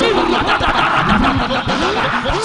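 A large congregation praying aloud all at once: many voices shouting and calling over one another, rising and falling, with hands clapping through it.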